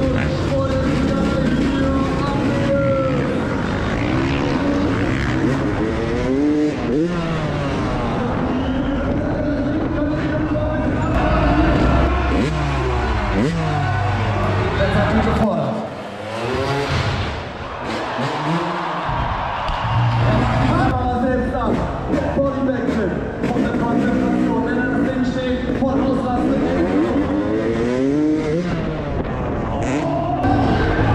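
Dirt bike engines revving, their pitch climbing and falling again and again, with a short quieter stretch about halfway through.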